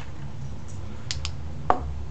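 Three light, sharp clicks, two close together about a second in and one more near the end, over a low steady hum.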